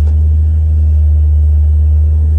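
Steady low rumble of a Chevrolet TrailBlazer's engine and road noise, heard inside the cabin as it drives slowly.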